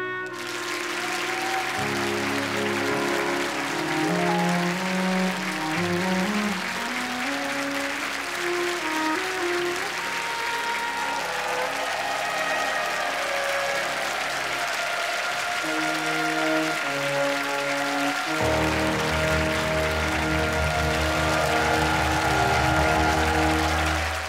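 Audience applauding throughout while a live orchestra plays on. The music swells with a heavy bass about three-quarters of the way through.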